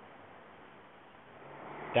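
Faint, steady outdoor background hiss with no distinct events, growing a little louder near the end.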